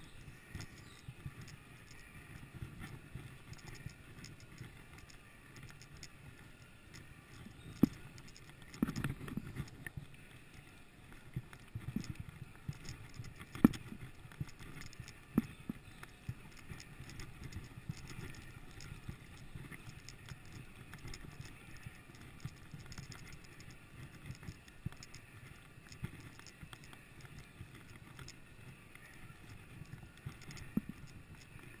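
Mountain bike rolling down a dirt forest trail: a steady low rumble of the tyres on the ground, with scattered sharp knocks and rattles as the bike goes over bumps.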